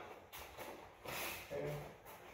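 Faint rustling and shuffling as two grapplers in cotton gis release their grip and step apart, a soft swish about a second in, then a man says "Okay."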